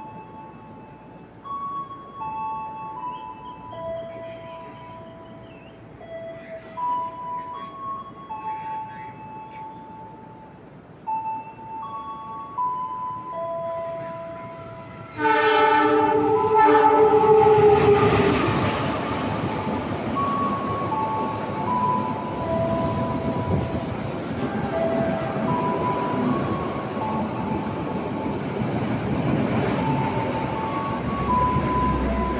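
A simple tune of single held notes plays for about fifteen seconds. Then a CC206 diesel-electric locomotive sounds one loud horn blast of about two seconds as it approaches, and the noise of the locomotive and its passenger coaches running straight through the station rises fast and stays loud to the end.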